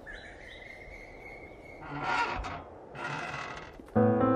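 Faint outdoor ambience: a bird's thin, held whistling call with a few short chirps, then two brief swells of rushing noise about a second apart.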